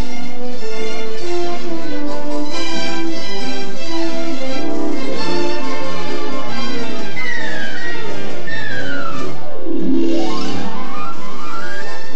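Orchestral film score, with quick falling runs of notes about seven seconds in and rising runs near the end.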